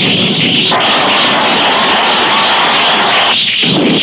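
Loud, dense roar of war-scene sound effects, explosions among them, mixed with dramatic music on an old mono film soundtrack. It fills out about a second in and thins briefly near the end.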